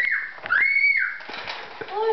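A child's high-pitched squeal: a brief one, then a longer one held at one pitch for about half a second.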